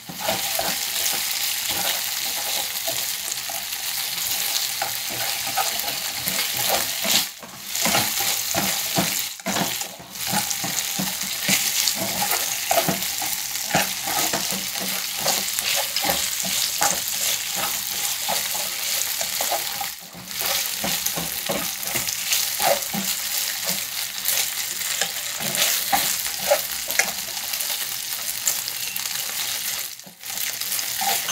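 Sliced pork and garlic sizzling in a hot Tefal non-stick frying pan, stir-fried with wooden chopsticks that click and scrape against the pan. The sizzle is steady, broken by a few brief dips.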